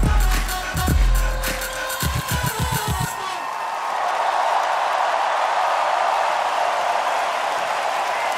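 The final bars of a pop song, with heavy kick drums and a quickening run of drum hits that cuts off about three seconds in. A large crowd then cheers and applauds.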